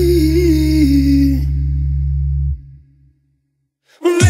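The end of a pop song: a held sung note over a sustained low bass note. The voice stops about a second and a half in, the bass cuts off about a second later, and silence follows.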